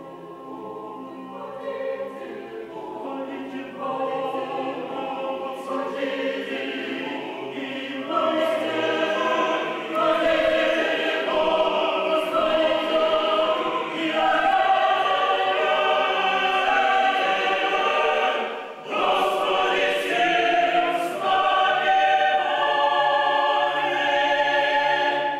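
Mixed choir singing Russian Orthodox liturgical chant a cappella. It enters softly, grows fuller and louder over the first ten seconds, and breaks briefly for breath about three quarters of the way through before going on.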